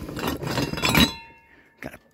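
Glass and ceramic ornaments rustling and clinking together in a cardboard box as a hand rummages through them, ending in a sharp clink about a second in whose ringing tone fades over the next second.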